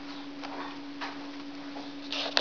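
A lutino peach-faced lovebird rubbing and treading on a wad of paper towel in mating-style mounting, making a few soft paper rustles and scratches, with a steady low hum underneath.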